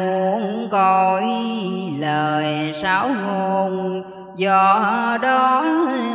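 A woman chanting Hòa Hảo Buddhist scripture verses in a slow, melodic Vietnamese recitation style, drawing out long held notes that slide and bend in pitch. There is a brief pause for breath about four seconds in.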